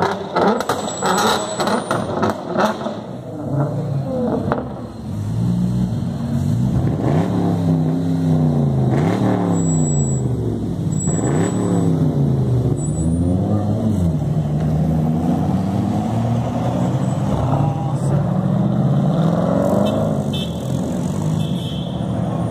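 Sports car engines revving hard, the pitch climbing and dropping several times in quick succession, then holding a steady high drone with a last rise near the end. A run of sharp cracks comes in the first couple of seconds.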